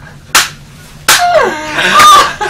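One sharp smack of hands about a third of a second in, then women's loud laughter bursting out about a second in, one voice sliding down in pitch.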